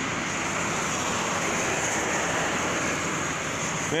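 Heavy rain falling, a steady even hiss with no breaks.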